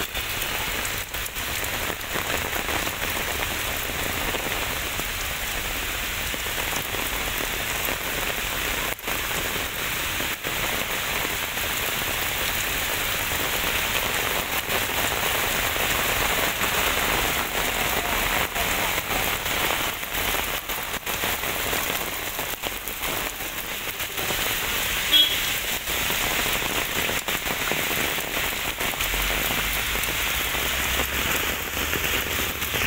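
Heavy rain pouring onto a paved footpath and road, a steady dense hiss of falling water, with one brief sharp sound about five seconds before the end.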